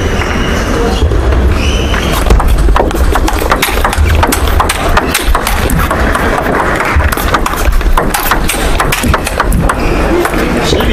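Table tennis rally: the celluloid-type plastic ball clicks sharply off rubber-faced bats and the table in quick succession, over steady background noise from the hall.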